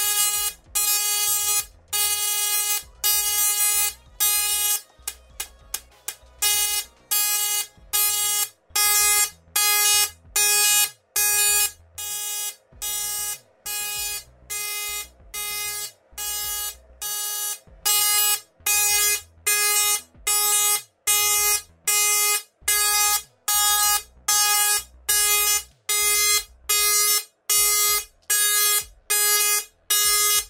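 Dual-pole music Tesla coil playing a tune through its arc: a rhythmic run of short, harsh buzzing notes with silent gaps between them, and a quick flurry of notes about five seconds in.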